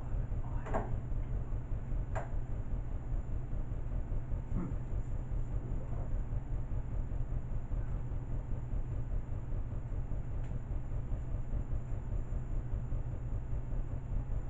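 A steady low rumble throughout, with a few faint knocks and rustles of household items and a plastic bag being handled, most of them in the first five seconds.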